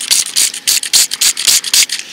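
Hand-held trigger spray bottle squirting into a dirt hole in a rapid run of short hissing sprays, washing the soil off a buried coin.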